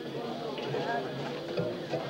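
Several people talking at once, with no music playing.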